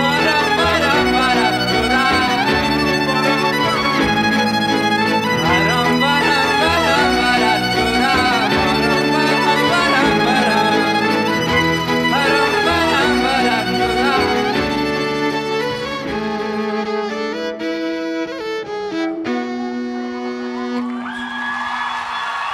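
Live band music led by a bowed violin playing a wavering melody over a fuller backing with a low bass line. About sixteen seconds in, the bass drops out and the music goes on more quietly with the violin and held tones.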